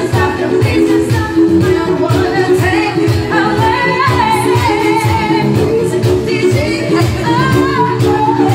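Women singing a pop song into microphones over loud amplified music with a steady beat, the voice holding long notes in the middle and near the end.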